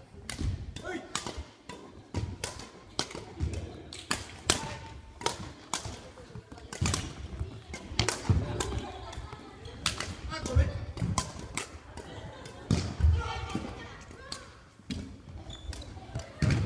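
Badminton rally on a gymnasium's wooden floor: sharp clicks of rackets striking the shuttlecock mixed with heavy thuds of feet landing and pushing off, recurring every second or two, with voices in the hall behind.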